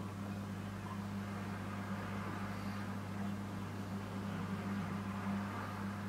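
A steady low hum with faint background hiss, unchanging throughout: room tone. There is no distinct sipping or glass sound.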